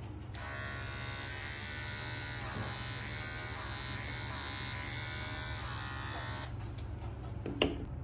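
Electric hair clippers running steadily, shaving the sedated cat's fur before the spay, with the pitch wavering in the middle; they switch off about six and a half seconds in, and a short sharp click follows near the end.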